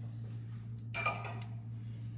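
A single light clink of kitchenware about a second in, with a brief ringing tone like glass being touched, over a steady low hum.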